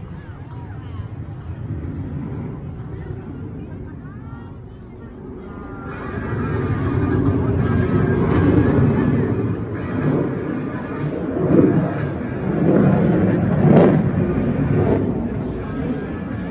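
Low jet rumble of the F-35 dying away after its pass. About six seconds in, loud music starts over the airshow's loudspeakers, with voices from the crowd.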